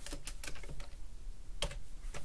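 Typing on a computer keyboard: a run of key clicks, with one louder keystroke about three quarters of the way through.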